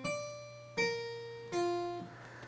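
Three single piano notes, struck about three-quarters of a second apart and each left to ring and fade, falling in pitch. They are scale degrees 9, 7 and 4, spelling out the number 1974 as a melody.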